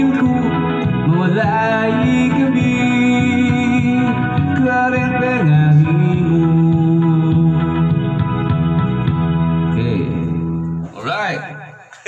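Karaoke backing music with a man's voice singing long held notes into a microphone through the sound system; the music stops about eleven seconds in.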